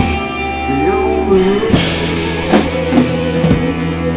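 Live rock band playing an instrumental passage on electric guitars, bass and drum kit. After a drum hit at the start the band thins out under a rising guitar phrase, then the cymbals and full kit come crashing back in a little before halfway.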